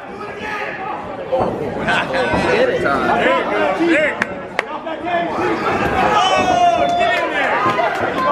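Crowd of spectators talking and shouting over one another, with a few sharp knocks about two and four and a half seconds in and one drawn-out shout about six seconds in.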